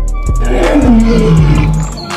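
A lion's roar sound effect, falling in pitch over about a second, over background music with a steady beat.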